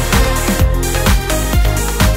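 Background electronic dance music with a steady kick-drum beat, about two beats a second.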